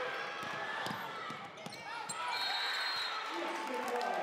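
Gym sounds of a basketball game: a basketball bouncing on the hardwood and voices of the crowd in the stands, with a referee's whistle blowing briefly, high and thin, about two seconds in.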